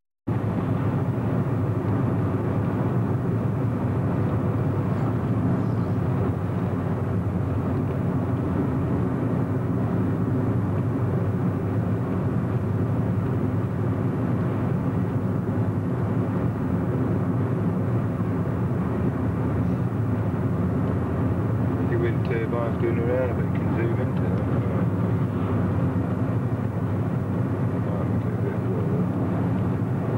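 Steady engine and tyre noise of a car driving at road speed, heard from inside the cabin. The sound drops out for a split second at the start.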